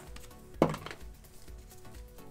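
Cardboard trading cards being handled and sorted by hand, with one sharp click a little over half a second in, over faint background music.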